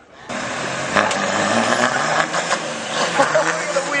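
A vehicle engine running steadily under a wash of noise.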